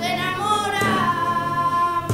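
A girl singing a flamenco song: one long held vocal line that rises in pitch and falls back, with flamenco guitar accompaniment.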